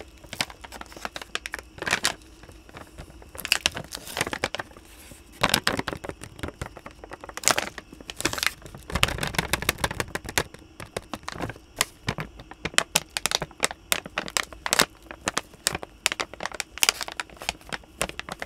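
Plastic bag of dog treats crinkling and crackling as it is handled right at a microphone, in irregular clusters that grow thicker in the second half.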